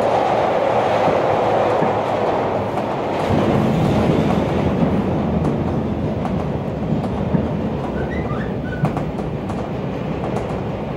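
Chicago 'L' rapid-transit train car running, heard from inside the car: a steady rumble of wheels on rail with a few clicks over the rail joints. The rumble shifts deeper about three seconds in.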